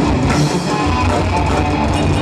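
A death metal band playing live and loud: distorted electric guitars and bass over a drum kit, dense and unbroken.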